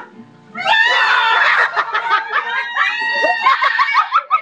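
High-pitched shrieking and squealing voices mixed with laughter, starting about half a second in and running on continuously.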